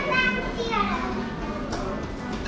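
A high-pitched voice calling out briefly in the first second, over the background chatter of a restaurant dining room.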